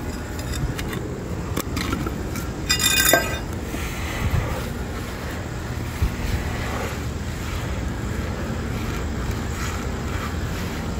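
Wind rumbling on the microphone, with a few knocks of tools and stone. The loudest is a ringing metallic clink about three seconds in.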